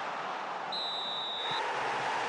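Stadium ambience: a steady wash of crowd and open-air noise, with one high, steady whistle tone a little under a second long near the middle.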